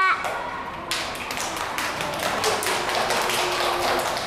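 A class of young children clapping together, starting about a second in.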